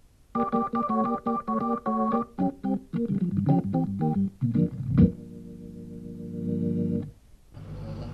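Hammond organ playing a quick jazz phrase of short, detached notes and chords, then a chord held for about two seconds before it stops.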